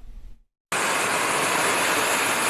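Lilium electric air taxi's rows of ducted fans running in a low hover, a loud steady rushing hiss. It cuts in abruptly about two thirds of a second in, after a brief moment of silence.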